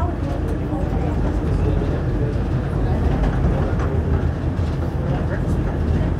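Steady low rumble of an automated tram running at speed, heard from inside the passenger car.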